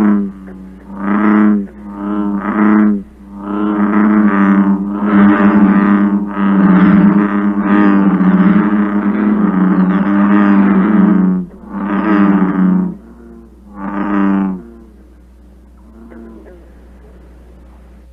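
American bullfrog calls: a series of deep, low 'rum' notes, each about a second long, running together into a longer stretch of calling in the middle, then two more notes and a last faint one near the end. A very low, guttural sound.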